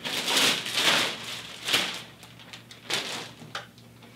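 Clear plastic wrap rustling and crinkling as it is pulled off a metal computer case panel, with sharper crackles about a second and a half in and again near the end.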